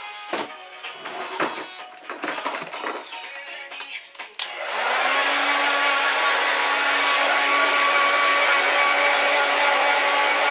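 Strummed guitar music, then about halfway through a handheld hair dryer switches on and runs with a steady rush of air and a hum.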